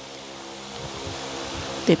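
Steady engine hum with road noise, heard from inside a moving vehicle.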